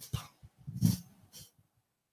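A man's short breaths and soft mouth sounds close to a handheld microphone, about four brief puffs in the first second and a half.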